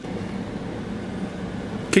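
Steady, even background noise inside a car's cabin, with no distinct events.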